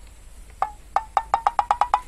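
A quick run of short, pitched wood-block-like knocks, about ten of them, coming faster and rising slightly in pitch: an added cartoon-style sound effect.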